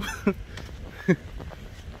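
A man laughing softly: a couple of short chuckles, the second a falling one about a second in.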